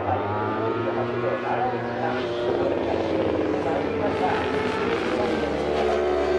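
A JSB1000 superbike's four-stroke litre-class racing engine running as it approaches round the circuit's bends. Its note falls over the first few seconds, then rises again near the end as it accelerates.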